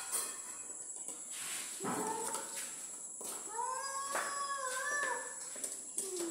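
Scattered knocks and scrapes from hand work at a wall-mounted electrical box. From about three and a half seconds in, a long wavering, whining call lasting about two seconds sounds in the background.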